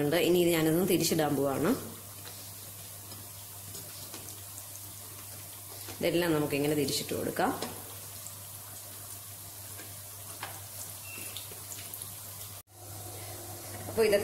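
Green gram pakodas deep-frying in hot oil in a wok: a steady sizzle, with a voice talking briefly at the start and again about six seconds in.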